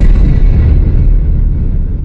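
A sudden loud, deep rumbling boom that cuts in as synthesizer music stops and dies away over about three seconds, the high part fading first: an added cinematic impact sound effect.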